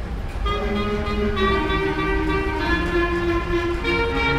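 Clarinet ensemble starting to play about half a second in: sustained chords, with the parts moving to new notes every second or so.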